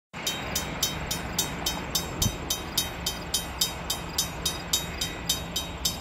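Railroad crossing bell ringing steadily, about four strikes a second, over a low rumble from the approaching train.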